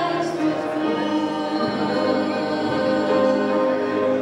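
A female vocalist singing a slow song into a microphone, amplified through the hall's speakers, with grand piano accompaniment; she holds long sustained notes.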